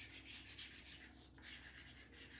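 Faint rubbing of a chalk pastel across paper in quick, even back-and-forth strokes, about six or seven a second, used like a shader to fill in a large area with colour.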